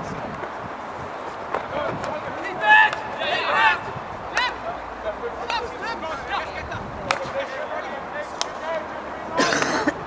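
Field hockey players shouting to one another across the pitch, about three seconds in and again near the end. Several sharp cracks of hockey sticks striking the ball come in between.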